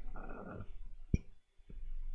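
A faint breathy sound from a person close to the microphone, then a single sharp click about a second in.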